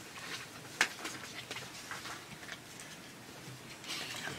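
Quiet small room with faint desk handling noises, light rustles and ticks, and one sharp click a little under a second in.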